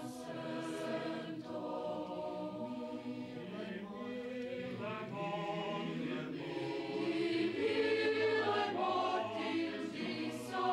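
A group of voices, mostly young women's, singing together in held notes, growing louder about seven seconds in.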